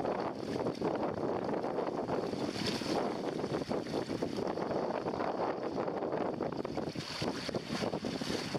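Wind blowing over the microphone and water rushing and splashing along the hull of a sailing canoe under way in choppy water: a steady rush broken by constant small splashes.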